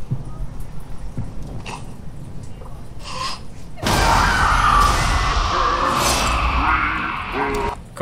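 Horror film trailer soundtrack: a tense, low stretch with a few scattered knocks, then about four seconds in a sudden loud crash of something bursting through a wall, with a woman screaming and music over it for a few seconds.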